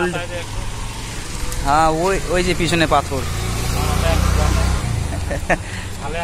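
A man's voice briefly, then a low rumble that swells, is loudest four to five seconds in, and fades, with a sharp click just after.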